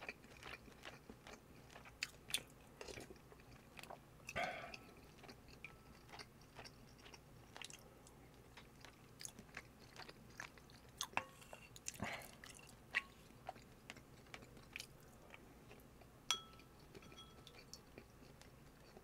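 Soft, close-miked chewing and mouth clicks of someone eating bulgogi over rice. A few sharper clicks come from a spoon against a ceramic bowl, one near the end with a brief ring.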